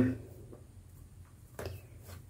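Quiet handwork with a single faint click about one and a half seconds in, as wooden knitting needles touch while a stitch is worked.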